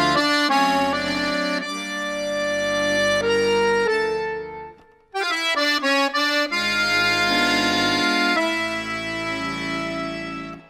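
Accordion playing a Romani-style (tzigane) melody with sustained chords. One phrase breaks off about five seconds in, and a second phrase starts straight after.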